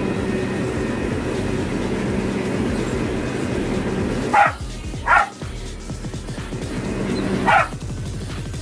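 A small dog barks three times over background music: twice close together around the middle and once near the end.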